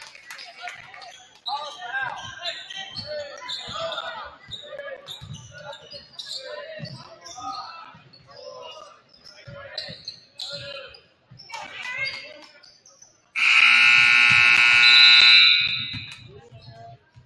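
Gymnasium scoreboard buzzer sounding once, loud and steady for about two and a half seconds near the end, as the game clock runs out and the period ends. Before it, a basketball bounces on the hardwood court amid players' and spectators' voices in the large hall.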